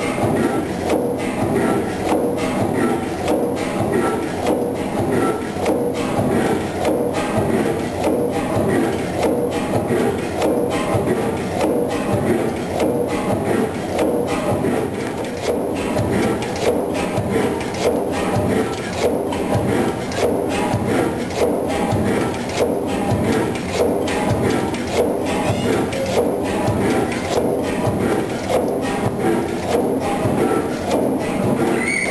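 Crossley HH11 single-cylinder horizontal diesel engine of 37 litres running slowly, at about 105 rpm, with a steady mechanical clatter and knocking from its moving crank and crosshead.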